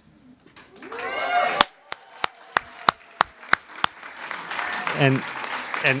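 Audience applause with a run of loud, evenly spaced hand claps close to the microphone, about three a second for a little over two seconds, after a brief voice. The applause greets an award winner.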